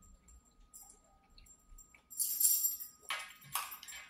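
A metal fork scraping and clinking against a plate as food is scooped up: one longer hissy scrape about halfway through, then two short scrapes near the end.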